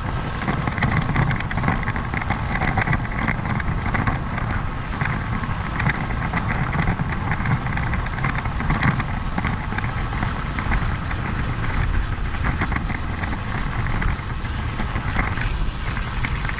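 Steady wind rush and low rumble on the handlebar camera's microphone as a road bike rolls along an asphalt road, with the tyres' road noise underneath.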